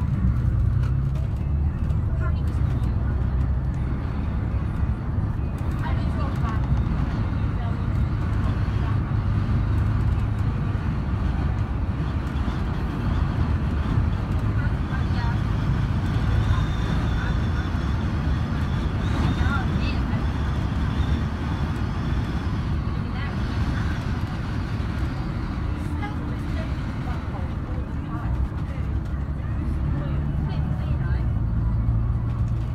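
Steady low drone of a 2011 VDL Bova Futura coach's diesel engine with road and tyre noise, heard from inside the passenger cabin while under way.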